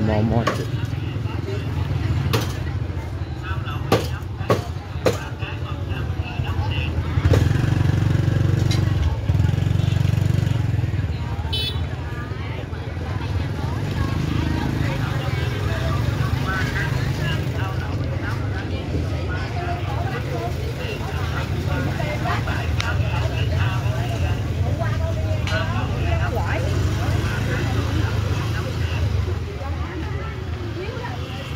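Busy open-air market ambience: overlapping chatter of vendors and shoppers, with motorbikes passing along the lanes over a steady low rumble. Several sharp clicks come in the first five seconds.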